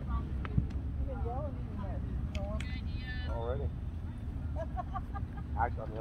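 Raised voices of players and spectators calling out across a soccer field, heard from a distance and indistinct, over a steady low wind rumble on the microphone. There is a single sharp knock about half a second in.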